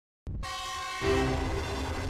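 Train horn sounding over the low rumble of a passing train. It starts a moment in and grows louder about a second in, when a lower-pitched chord comes in.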